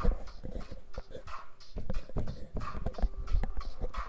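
A dog close to the microphone: breathy bursts about once a second among scattered clicks and knocks.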